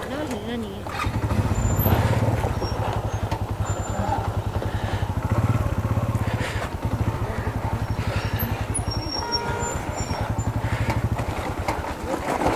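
Single motorcycle engine running at low revs with a steady, even beat, a little louder from about a second in, as the bike is held back in gear down a steep rocky descent.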